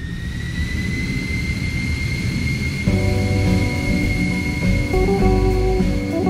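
Boeing 737 turbofan engines spooling up for takeoff, heard from the cabin: a high whine that rises in pitch over the first two seconds and then holds steady over a roar. About three seconds in, guitar background music comes in over the engine sound.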